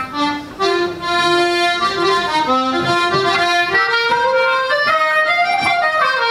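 Traditional Irish dance tune played on wooden flute and accordion: a few scattered notes, then both instruments together at full tempo from about a second in.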